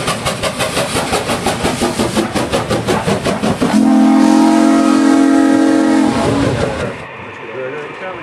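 Steam locomotive sound for a Reading T1 4-8-4: fast, even exhaust chuffs at about six beats a second, then a multi-tone chime whistle blown for about two and a half seconds about halfway through. Near the end the sound drops off abruptly to a much quieter background.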